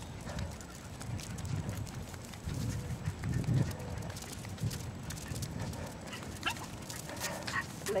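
Jack Russell terriers making a few short yips near the end while pulling on a coupler, over a low rumble of movement from the camera being carried along.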